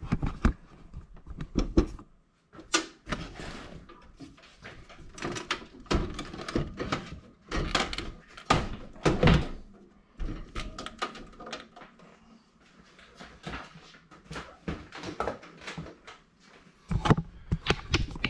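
Irregular knocks and thunks as a top-loading VCR and the boxes around it are shifted and pulled off a metal wire shelf. The heaviest hits come about eight to nine seconds in, with another burst of knocks near the end.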